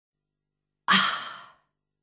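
A person's sigh of satisfaction: one breathy exhale about a second in that starts sharply and fades away over about half a second.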